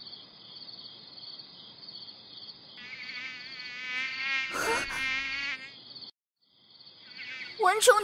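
Steady high chirring of night insects, joined about three seconds in by a mosquito's buzzing whine that swells louder as it closes in and stops after about two and a half seconds, with a short hit just before it ends. The insect chirring drops out briefly, then returns.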